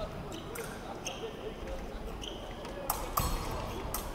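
Murmur of voices in a large sports hall, with two brief high squeaks and then two sharp metallic clicks a third of a second apart, about three seconds in, as foil blades meet.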